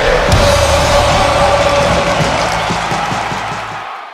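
Intro jingle music with a long held note over a dense wash of sound, fading out near the end.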